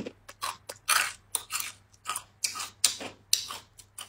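Crunchy chewing of a crispy fried rice cracker (guoba): a steady run of short crunches, about two or three a second.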